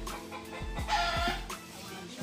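A chicken clucks once about a second in, over music with a steady beat playing in the background.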